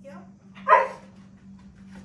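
A dog gives one short, loud bark about three-quarters of a second in, over a steady low hum.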